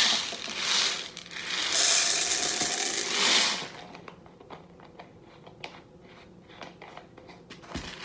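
Dry popcorn kernels pouring from a plastic jar into an empty glass jar: a dense rattling patter against the glass for about three and a half seconds. After that come only faint scattered clicks.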